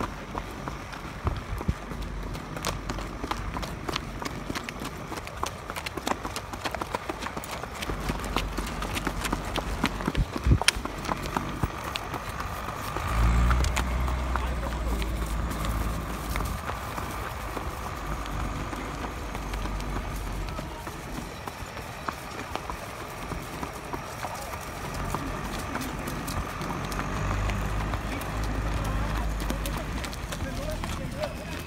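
Hoofbeats of ridden horses on a dirt farm track, an irregular run of sharp clicks, with a low rumble coming in about thirteen seconds in.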